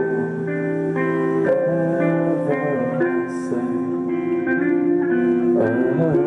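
A live rock band playing an instrumental passage: electric guitars ringing out sustained chords over bass, the chords changing every second or two, with no singing.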